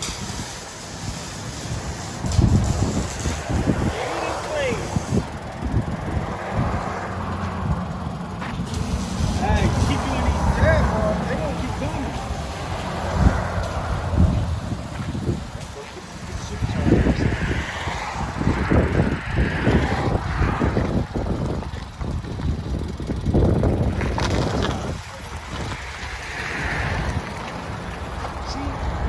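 Supercharged 5.0-litre V8 of a 2012 Jaguar XJ running through a dual exhaust with both resonators deleted, its deep exhaust note rising and falling.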